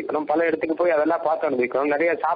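A man speaking continuously, delivering a religious discourse in Tamil; nothing but speech.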